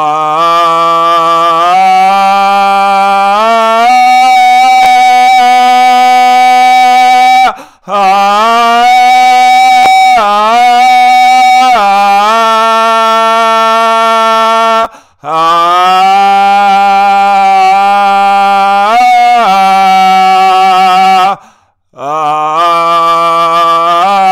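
A man chanting solo, with no accompaniment, on long held vowel tones with no words heard. The singing runs in phrases of about seven seconds, each moving in slow steps and brief swoops of pitch, and each broken by a short breath. The voice is close on the microphone.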